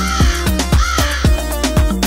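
Two crow caws, one at the start and one about a second in, over the steady dance beat of a children's song.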